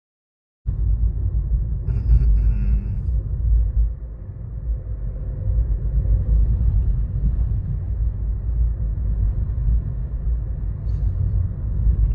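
Low, steady rumble of a car driving along an asphalt road, heard from inside the cabin. It cuts in abruptly under a second in.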